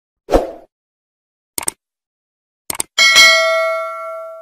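Subscribe-button animation sound effects: a short thump, two quick double clicks, then a bell ding about three seconds in that rings on and slowly fades.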